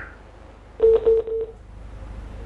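A click, then three short beeps of one steady low tone over a telephone line: the tone of a caller's call being cut off.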